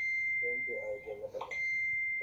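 A steady, high-pitched electronic beep sounds twice: briefly at first, then again, held for longer, from about a second and a half in. A voice talks briefly between the two.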